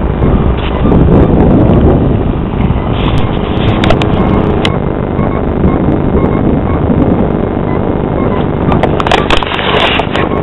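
Loud, steady roar of an airliner's engines during its takeoff, with a few short clicks about four seconds in and again near the end.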